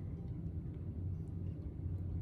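Low steady background hum with nothing else distinct over it.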